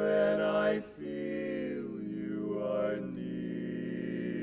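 Barbershop quartet of four men's voices singing a cappella in close harmony, live. The chords are held long, with a brief break about a second in, then a long sustained chord.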